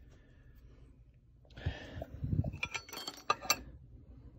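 A short rustle of handling, then several light, sharp metallic clinks with a brief ring, as hand tools or the freed seal knock against the engine cover.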